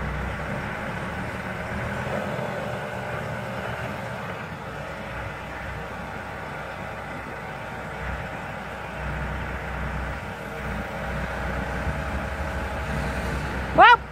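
Telehandler engine running steadily under load as its boom lifts a bundle of logs, with a faint steady whine over the engine hum. Just before the end a person cries out, the voice sweeping up sharply in pitch.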